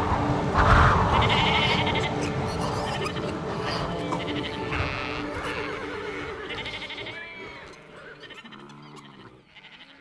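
Sheep bleating several times over soft background music, with a lower, quavering bleat near the end as the whole track fades out. A brief rush of noise comes about half a second in.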